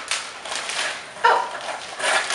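A large plastic mailer bag rustling and crinkling as it is unfolded and handled, with a short pitched sound about a second in.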